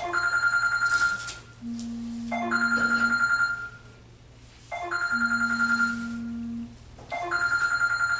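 A phone ringtone: a trilled electronic ring that repeats about every two and a half seconds, with a lower held tone between the rings.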